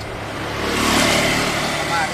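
A motor vehicle passing by on a wet road: engine and tyre noise swell to a peak about halfway through, then fade.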